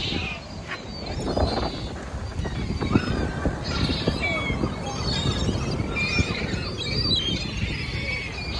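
Gulls calling, a run of short, repeated cries one after another, over a steady low background noise.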